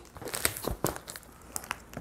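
A plastic-wrapped cardboard parcel being handled and opened by hand: irregular crinkling with a few sharp crackles.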